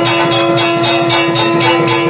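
Temple bells ringing rapidly in an even rhythm, about six or seven strokes a second, over a steady held note, accompanying the aarti flame offering before the deity.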